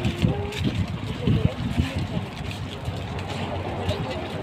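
Voices of people talking, over a steady low hum of vehicle engines and general outdoor noise.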